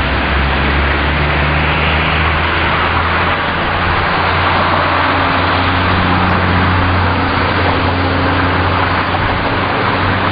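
Steady, loud outdoor rushing noise with a low steady hum underneath, unchanging throughout.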